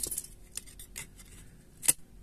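Plastic back cover of a Xiaomi Redmi 9T being pried off its adhesive with a thin pry tool: faint scraping and small ticks, then one sharp click near the end as the cover comes loose.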